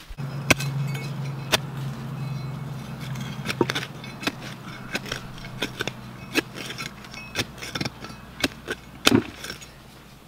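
Irregular sharp clicks, clinks and scrapes of small hand digging tools and fingers picking through stony dirt. A steady low hum runs under them and fades out near the end.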